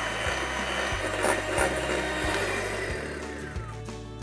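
Electric hand mixer running steadily with its beaters whipping egg and sugar in a glass bowl to a pale, thick foam for sponge cake batter, its pitch falling as it winds down and stops near the end. Background music plays underneath.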